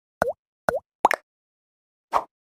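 Three short cartoon "bloop" pop sound effects about half a second apart, each dipping then rising quickly in pitch, the third with a quick extra click; part of an animated YouTube subscribe-reminder graphic.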